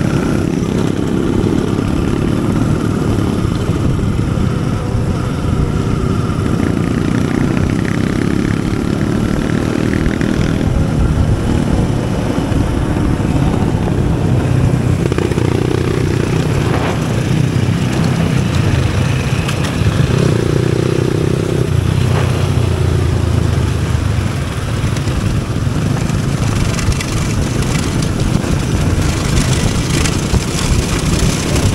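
Enduro motorcycle's engine running continuously, its speed rising and falling a little now and then.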